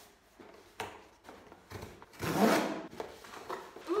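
A cardboard shipping box being handled and torn open: a few light knocks, then one loud ripping sound of just under a second about two seconds in, followed by smaller scrapes of cardboard.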